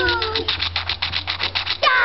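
Young girls' high-pitched squeals that fall in pitch, at the start and loudly again near the end, with a fast, even run of clicks, about ten a second, in between.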